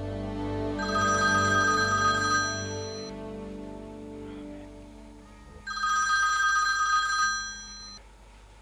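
Mobile phone ringtone sounding for an incoming call, two rings of about a second and a half each, about three seconds apart. Soft background music fades out during the first ring.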